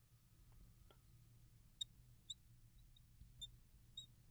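Near silence over a low room hum, with a few faint, short clicks of a marker tip meeting a glass lightboard as words are written.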